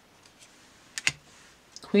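Tarot card being taken off the top of a deck and set down: two quick sharp clicks about a second in, against a quiet room.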